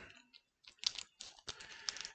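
Pokémon card booster pack wrapper being handled and opened: soft, irregular crinkling and crackling, busiest in the second half.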